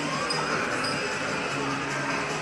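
Arcade game-centre music: the crane game's tune mixed with the music of nearby machines, steady with held notes.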